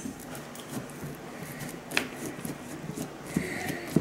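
A kitchen knife being worked into a tough pumpkin: quiet scraping and creaking with small clicks, and one sharper click about halfway through.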